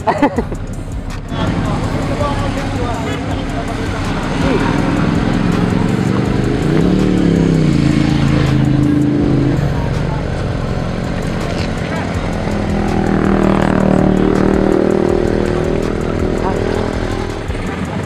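Motorcycle engine running, its pitch rising in a rev about seven seconds in, holding there, then dropping back; a second stretch of steady running follows later, with voices in the background.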